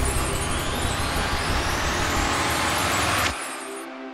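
Cinematic title riser: a dense rushing noise over a deep rumble, climbing steadily in pitch and then cutting off abruptly about three seconds in. Quieter sustained music notes follow.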